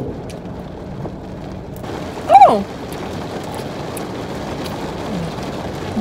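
Steady hiss inside a car cabin, with a woman's single short "oh" about two seconds in, the loudest sound, as she tastes a corn dog.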